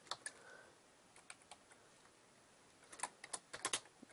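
Faint computer keyboard typing: a few scattered key taps, then a quick run of keystrokes near the end.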